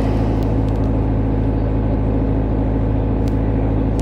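An engine running steadily at a constant speed: a low, even hum that holds the same pitch throughout.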